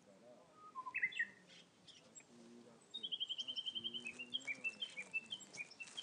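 Small birds singing: a brief chirp about a second in, then from about halfway a rapid trill of about ten notes a second, falling slightly in pitch, followed by scattered short chirps.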